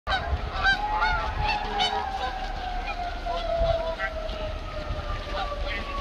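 Geese honking in short repeated calls, thickest in the first two seconds, over a long steady tone that slowly falls in pitch.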